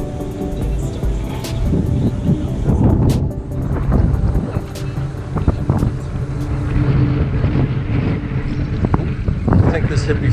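Wind buffeting an action camera's microphone over the steady low drone of a motorboat running across the inlet. The tail of background music fades out in the first seconds.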